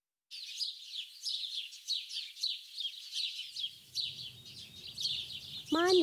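Birds chirping in a dense, continuous chorus of quick, high chirps, starting about a third of a second in.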